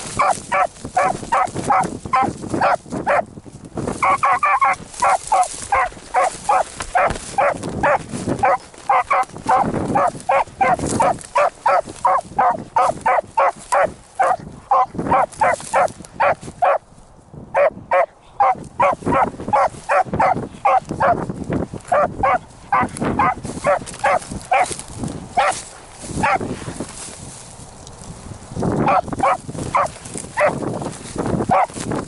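A beagle baying on a rabbit's scent trail: a long run of short, rapid barks, about three a second, broken by a few brief pauses, with a quieter stretch a little before the end.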